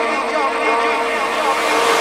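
Drum and bass mix in a build-up: the low end is filtered out, leaving sustained synth tones, while a rising noise sweep swells toward the end.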